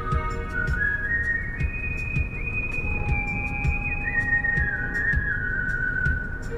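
A slow melody of long, high, held notes that slide from one to the next and waver near the end, over the low rumble of a car cabin.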